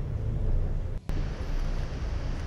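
Steady outdoor background noise with a low rumble, cutting out for an instant about a second in.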